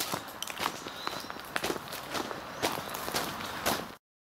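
Scratch-built Metre Maid (0-6-2 Sweet Pea) miniature steam locomotive running along the track: an irregular string of sharp clicks and knocks over a steady hiss.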